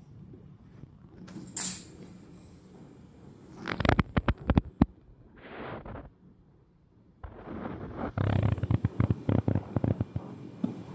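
Sharp metallic clicks and rattling from hands working on a flat knitting machine's steel needle bed: a quick cluster about four seconds in, a brief hiss, then a denser run of clicks and low knocks over the last few seconds.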